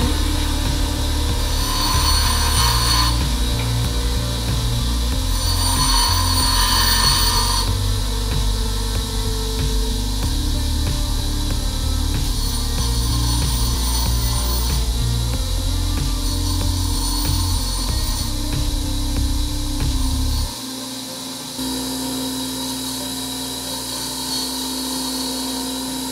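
Bench grinder running while a copper MIG contact tip is held and turned against the abrasive wheel, grinding the tip's face flat. The grinding hiss is strongest twice, about two seconds in and again about six to seven seconds in.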